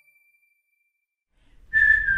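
Children's background music: a bell-like note rings out and fades, a second of silence follows, and near the end a whistled tune begins with one long, slightly falling note.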